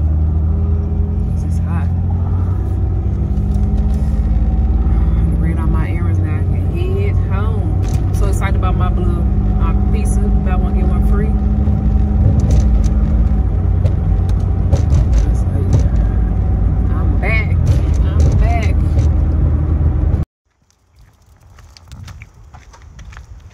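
Car cabin noise while driving: a steady low engine and road drone, with a voice heard now and then over it. It cuts off suddenly near the end.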